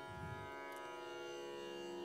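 A soft, steady musical drone: many sustained pitches held unchanging, with no strikes or melody.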